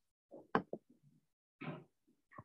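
A few short knocks about half a second in, followed by one longer, softer sound near the end.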